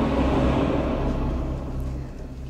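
Low, steady rumbling drone of a horror film score, easing off near the end.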